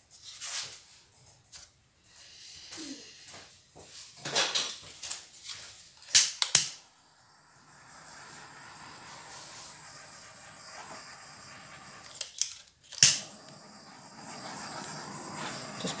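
Handheld blowtorch: two sharp clicks about six seconds in, then the steady hiss of its flame as it is passed over wet acrylic paint to burst air bubbles; another click a little after the middle and the hiss goes on. Before the torch, a few knocks and rustles of handling.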